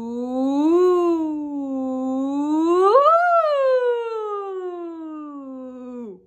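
A woman singing one unbroken "ooh": her pitch rises a little about a second in, falls back, then climbs steeply to her highest note about three seconds in and glides slowly back down to a low note, stopping at the end.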